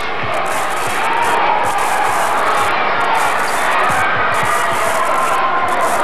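Gymnasium crowd cheering and shouting steadily, swelling slightly about a second in, with a basketball bouncing on the court underneath.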